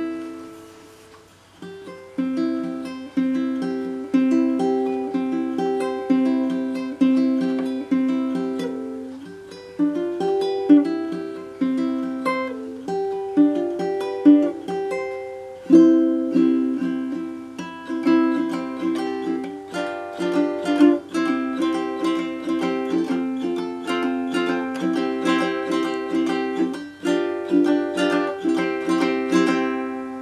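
Baritone ukulele tuned G-C-E-A, with Aquila-type strings, plucked in a solo tune of single notes and chords, each note ringing and fading.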